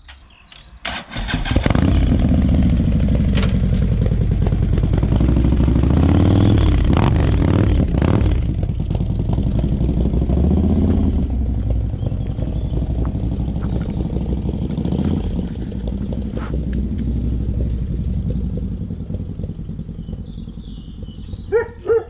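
Harley-Davidson Street Glide bagger's 120-cubic-inch V-twin starting about a second in, then running and revving with several rises and falls in pitch. The bike pulls away and its engine fades steadily as it rides off.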